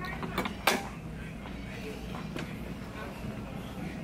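Steady low hum of a store's background, with one sharp click a little under a second in and a few fainter handling clicks.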